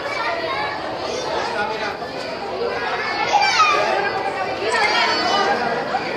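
Crowd chatter: many adults and children talking at once, with no words standing out, and a few high-pitched child voices rising above it about three seconds in.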